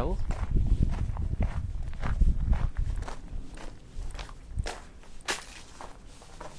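Footsteps crunching on gravel at a steady walking pace. A low rumble underlies the first three seconds, then fades.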